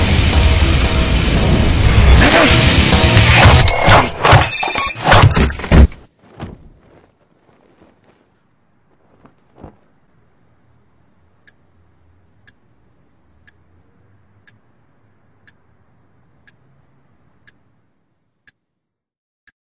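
Loud, heavy music that cuts off abruptly about six seconds in, followed by a few soft thuds and then a clock ticking once a second.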